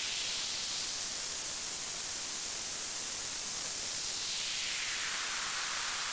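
White noise from a modular synthesizer played through a DIY Moog-style transistor ladder highpass filter as its cutoff is swept. The hiss thins out as the cutoff rises toward the middle, then fills back in as the cutoff is swept down again, at an even loudness throughout.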